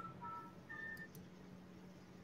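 Near silence with a low steady hum and a few faint, brief tones in the first second.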